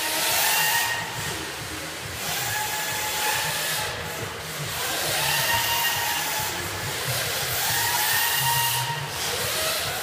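Several electric radio-controlled drift cars driven at full throttle on an indoor track. Their motor whines rise and level off again and again as the cars accelerate, over a steady hiss.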